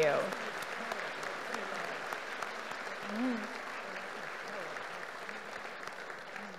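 Audience applauding, a steady clapping that eases slightly near the end, with a brief cheer or call about three seconds in.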